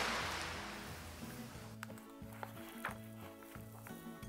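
A crashing-wave sound effect dies away as a fading hiss over the first second or so. Quiet background music follows, with a repeating low two-note bass pattern and a few faint clicks.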